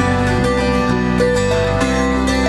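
Celtic lever harp being plucked in an instrumental passage, its notes starting one after another and ringing on over each other.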